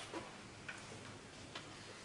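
A man sipping from a paper cup in a quiet hall: faint room tone with about three soft, brief clicks over two seconds.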